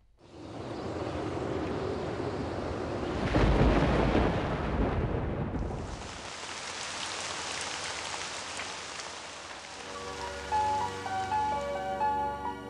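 Thunderstorm sound effect: steady rain hiss with a thunder rumble that swells to its loudest about three to five seconds in. Near the end a melodic music jingle begins.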